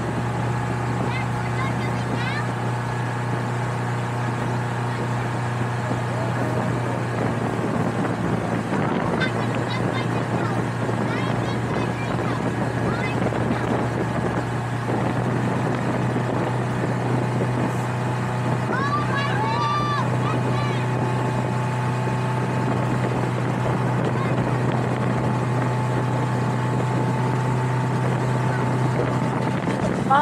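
Motorboat engine running steadily under way, a constant low drone with the rush of water and wind around the boat. Faint voices come through now and then.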